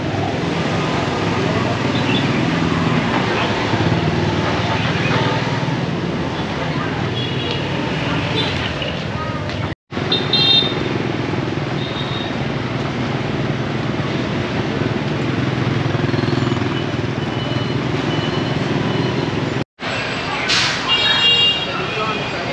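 Busy street traffic of motorbikes and cars: engines running steadily, with short horn beeps several times and people's voices nearby. The sound cuts out briefly twice, about ten seconds in and again near the end.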